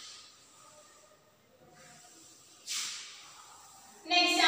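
Cloth duster wiping chalk off a chalkboard: faint rubbing with one louder swish a little under three seconds in.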